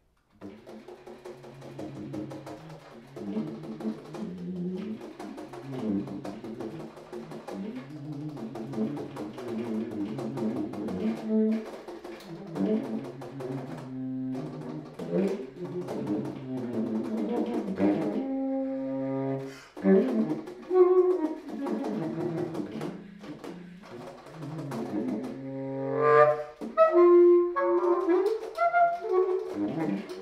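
Solo baritone saxophone playing, beginning about half a second in: low held notes under quickly shifting figures, with higher, brighter notes near the end.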